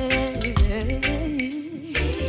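Gospel worship band music with a steady bass-and-drum beat and a held, wavering melody note over it.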